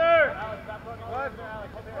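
Speech: a man shouting short calls, one at the start and a pair about a second in.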